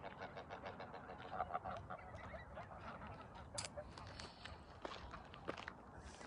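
Greylag geese honking: a quick run of repeated cackling calls in the first two seconds, then scattered short clicks and ticks.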